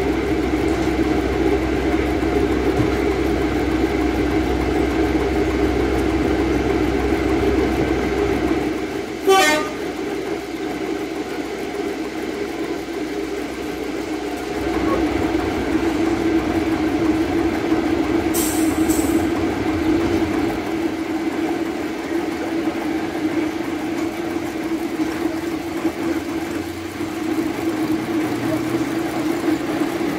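First-generation diesel multiple unit's underfloor diesel engines running steadily, heard from a carriage window as the train stands and then moves off along the platform. A short sharp sound comes about nine seconds in, where the deep rumble drops away, and a brief hiss of air comes a little past halfway.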